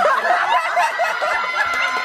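A group of people laughing together, several voices overlapping.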